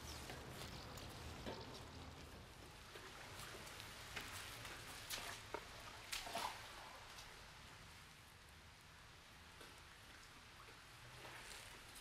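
Faint dripping water and scattered small taps over a low background hum.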